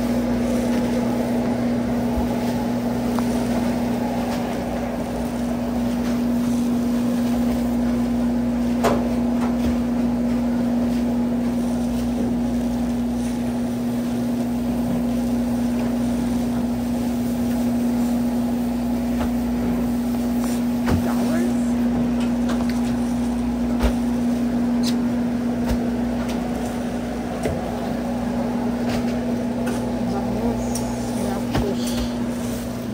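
Steady electrical hum of store machinery: one constant low tone with a deeper hum beneath it, unchanging throughout, broken by a few sharp clicks and knocks.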